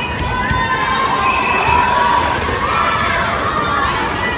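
Teenage girls' volleyball players shouting and cheering together, several drawn-out high calls overlapping, as a point is won.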